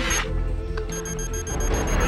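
Film score with a low sustained drone and held tones. About a second in, rapid high electronic computer beeps join it, roughly eight a second.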